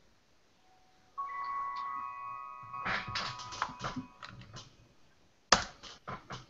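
A bell-like chime rings out about a second in, its tones holding and fading, followed by a scatter of short clicks and a sharp knock near the end.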